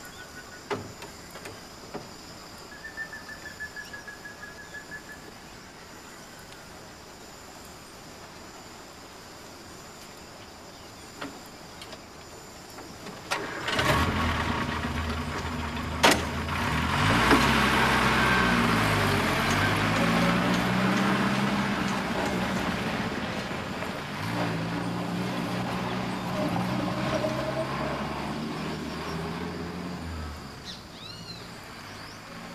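About halfway through, an engine starts and runs, its pitch rising and falling as it revs. Before that it is quiet apart from a few clicks and a brief high trill.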